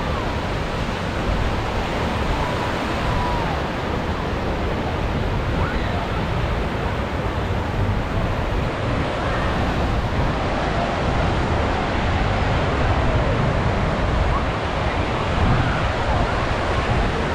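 Small waves breaking and washing in shallow surf: a steady rush of water, with wind rumbling on the microphone and faint distant voices of bathers.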